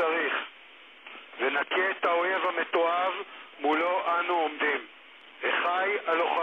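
Speech only: a voice delivering a foreign-language address in short phrases with pauses of about a second, thin and narrow-sounding like a radio or phone line.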